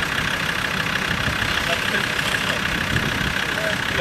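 Land Rover Discovery engine idling steadily.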